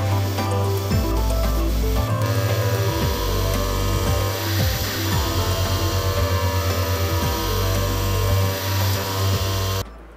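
CNC vertical machining centre milling the profile of a metal workpiece with an end mill, with background music over it. The machining sound cuts off suddenly near the end.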